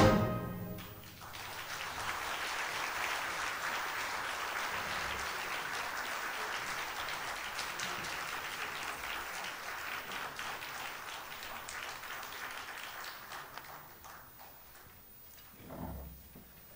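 A wind band's final chord cutting off with a short ringing tail in the hall, then audience applause that holds steady and dies away about two seconds before the end.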